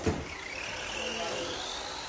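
A thud at the very start, then the electric drive of a Tamiya TT-02 radio-controlled touring car whining as it accelerates, the whine rising steadily in pitch.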